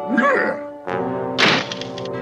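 A cartoon sound-effect thunk about one and a half seconds in, as two burly men jam side by side in a doorway. It lands over a held chord of music that starts just before it.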